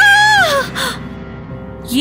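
A woman's single high-pitched scream of fright, rising then falling in pitch and ending about half a second in, over background music.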